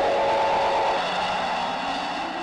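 A loud, steady rushing noise with a held mid-pitched tone over it, easing slightly in the second half as a lower tone rises.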